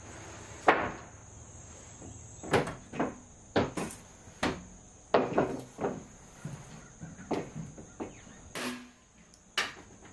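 Irregular knocks and taps of wood on wood, some only a fraction of a second apart, as deck framing lumber and pressure-treated shims are set and tapped in among the joists. A steady high-pitched tone runs underneath.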